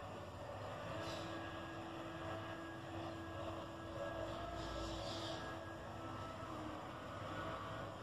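Quiet room background noise, with a faint steady hum that comes in about a second in and fades out about five seconds later.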